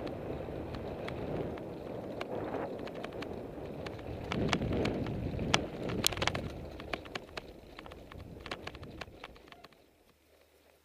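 Wind rumbling on the microphone of a mountain bike's onboard camera as it rides over bumpy slickrock sandstone, with sharp clicks and rattles from the bike over the rough rock. The rattles are thickest and loudest around the middle, and the sound fades away near the end.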